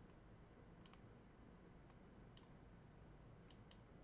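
Near silence with four faint computer mouse clicks, the last two close together near the end.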